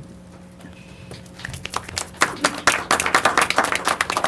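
Applause from a small group: a few scattered hand claps start about a second in, then build into steady clapping that carries on to the end.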